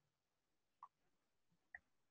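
Near silence, broken only by two faint, brief ticks, one a little under a second in and one near the end.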